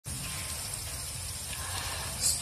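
Steady background hiss with a low hum underneath, unchanging throughout: the room and recording noise of a home setup.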